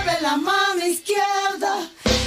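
A high, child-like voice singing two short phrases of a children's rock and roll song over a thin musical backing.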